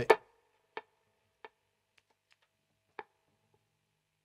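A handful of faint, short ticks, irregularly spaced: a muted electric guitar string picked lightly through the delay pedals while their delay times are being matched.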